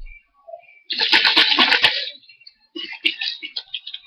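Hands handling a plastic baby bottle and a plastic bag: two bursts of rustling, rattling handling noise, the first about a second long with quick rapid strokes, the second a little shorter near the end.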